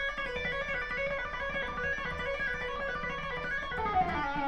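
Electric guitar playing a legato exercise, a steady run of evenly timed single notes sounded by left-hand hammer-ons rather than picking.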